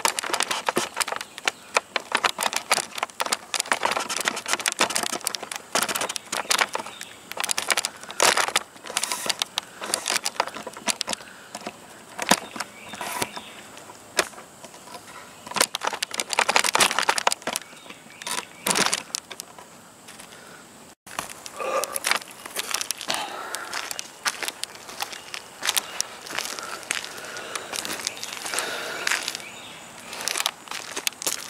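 Footsteps scuffing and crunching on a gritty asphalt-shingle roof scattered with dry pine needles: an irregular run of scrapes and crunches.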